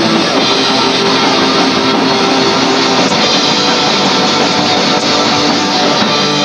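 A rock band playing live, loud and continuous, with electric guitars over a drum kit.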